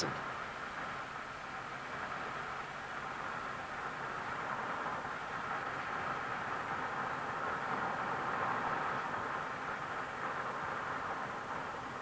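Steady road and engine noise of a moving car heard from inside the cabin, swelling slightly in the middle and easing toward the end.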